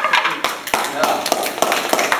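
A few people clapping, irregular sharp hand claps starting about half a second in, with voices over them near the start.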